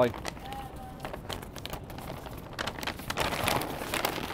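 Brown paper takeout bag rustling and crinkling as it is handled, folded and crumpled by hand, in irregular crackles that grow busier in the second half.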